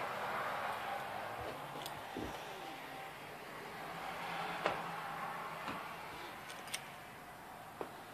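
Faint handling noise and rustle from a handheld camera being carried through a room, with a soft thump about two seconds in and a few small sharp clicks about a second apart in the second half.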